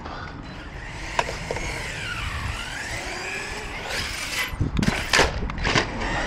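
Traxxas Sledge RC monster truck's brushless electric motor whining, sliding up and down in pitch as it speeds up and slows, over tyre rumble on concrete. A few loud knocks or thumps come in the last two seconds.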